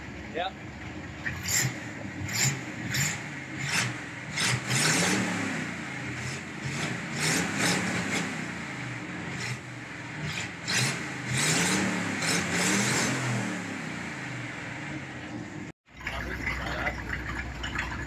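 Chevrolet 327 Turbo-Fire small-block V8, newly got running, revved by hand at the carburetor. There are several quick blips in the first few seconds, then longer revs that rise and fall twice. Near the end it is at a steadier idle.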